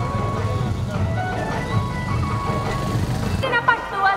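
Street sound: a steady traffic rumble mixed with voices and music. About three and a half seconds in, it gives way suddenly to a song with a lilting, ornamented melody.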